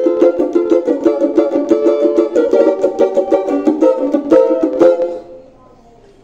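Oliver Brazilian banjo with a 10-inch pot, strummed fast and rhythmically, stopping about five seconds in. It is played to show a vibration that appears only while playing, which the player puts down to the overlong tailpiece touching.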